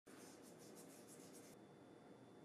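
Faint, gritty pattering of salt grains sprinkled from the fingers onto skin-on sea bass fillets and plate, in quick pulses about six a second, stopping about one and a half seconds in.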